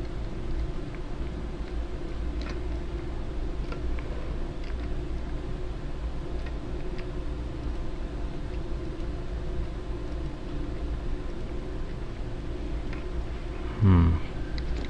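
Steady low background hum of a computer or room, with a few faint, scattered computer-mouse clicks.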